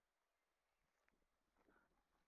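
Near silence, with faint rustling and a few small clicks in the second half.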